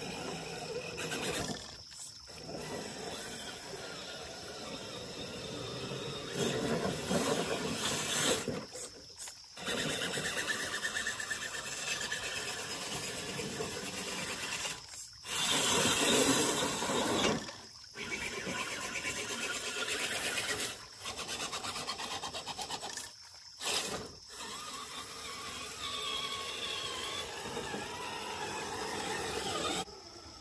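Redcat Everest Gen7 RC crawler's 27-turn brushed motor running while its tires churn and splash through deep creek water. The sound is broken by several sudden short gaps.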